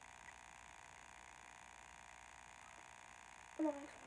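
Near silence: faint steady room tone with a thin hiss. A girl starts speaking near the end.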